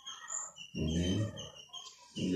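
A short wordless vocal sound from a man, under a second long, about halfway through. Faint high chirps sound in the background.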